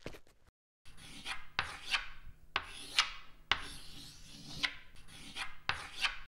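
Scratchy strokes of a drawing tool rubbing across paper, about two a second, sketching the outline of a door.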